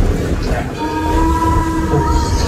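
Train whistle blowing one long, steady blast that starts about a second in, over the low rumble of the moving train.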